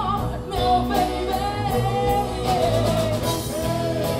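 Live rock band playing: singing with long held notes over electric guitars, bass and drum kit.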